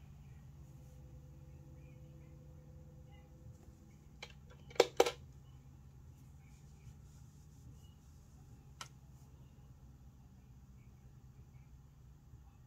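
Steady low hum of a small machine, with two sharp clicks in quick succession a little before halfway and a fainter click later.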